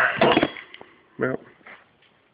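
A man speaking a few short words, with one faint click between them.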